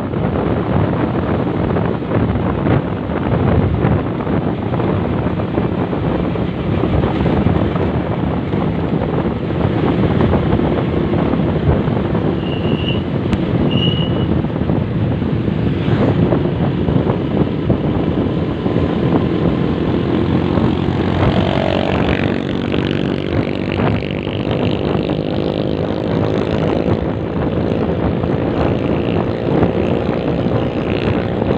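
Motorcycle riding along a road, its engine running under heavy wind noise on the microphone; over the last third the engine note climbs gradually as it speeds up. Two short high beeps sound near the middle.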